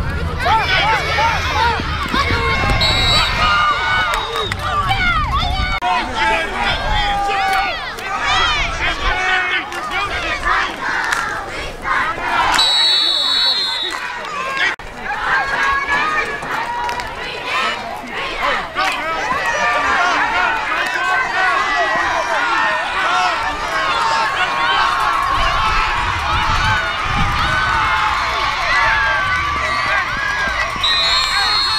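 Many voices of spectators and sidelines at a youth football game yelling and cheering through a play, with short whistle blasts, the clearest about thirteen seconds in.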